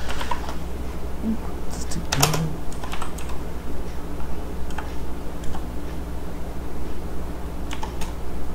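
Computer keyboard typing: irregular, separate keystrokes as code is entered, over a steady low hum.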